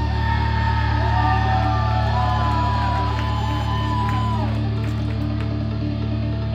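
Live rock band playing: an electric guitar holds long lead notes that bend in pitch, over a steady, sustained low bass note and held chords, with little drum beat.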